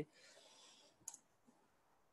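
Near silence: a faint hiss, then a quick double click about a second in from the computer being worked as a web address is entered in the browser.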